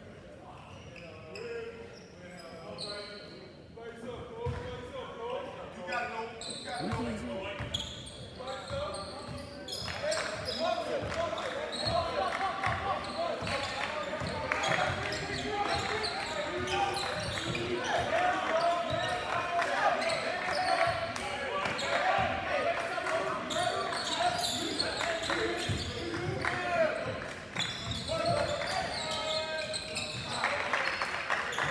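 A basketball bouncing on a hardwood gym floor during live play, with the hollow echo of a large gym. It is mixed with many unintelligible voices from players and spectators, which grow louder and more continuous from about ten seconds in.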